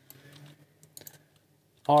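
Computer keyboard keys tapped a few times around the middle, quietly, as shortcut keys are entered.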